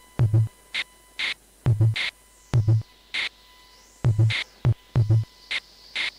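Looped electronic drum pattern played back from a Yamaha SU200 sampler, its kick and snare made from Korg Monotron sounds: short low kick thuds and hissy snare hits repeating in a steady rhythm. A faint high synth tone glides down and back up midway.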